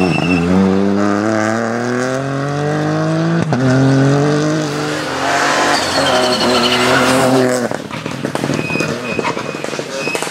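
Ford Fiesta rally car accelerating hard, its engine revs climbing steeply with a break about three and a half seconds in, then climbing again. About eight seconds in, the engine sound drops away and leaves a weaker, crackly sound.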